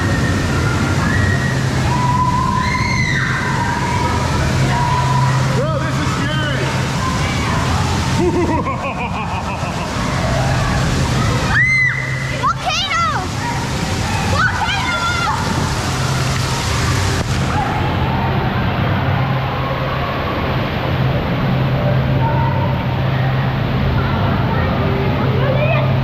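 Lazy-river water sloshing and rushing around inner tubes inside an enclosed rock cave, under a steady low hum, with voices calling out briefly now and then.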